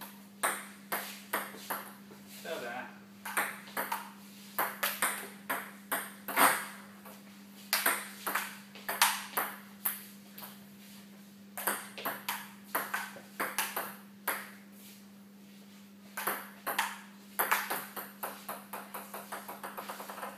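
Table tennis rally: a celluloid-type ping-pong ball clicking sharply off paddles and the tabletop in quick runs of hits with short pauses between rallies. Near the end comes a fast run of lighter ticks. A steady low electrical hum runs underneath.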